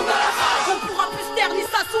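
Hip-hop beat with deep kick drums under a burst of loud, crowd-like shouting in the first second, with rap vocal lines coming back in near the end.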